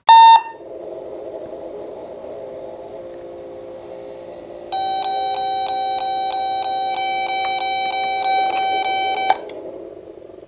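Datascope Spectrum OR patient monitor sounding: one loud short beep at the start, then a low steady hum, then about five seconds into it a loud, high, fast string of repeating alarm beeps that stops suddenly shortly before the end.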